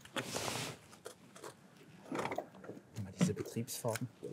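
Faint, distant men's voices talking, with a short rush of noise in the first half-second.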